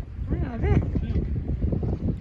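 Wind buffeting the microphone on an open sailboat, a heavy uneven rumble, with a person's voice briefly heard about half a second in.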